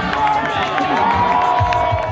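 Music with a steady beat mixed with a large crowd cheering and shouting.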